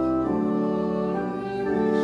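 Church organ playing sustained chords, moving to a new chord about a quarter second in and again near the end.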